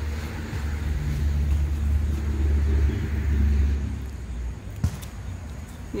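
Low engine rumble of a passing motor vehicle, building and then fading out about four seconds in. A single sharp click comes near the end.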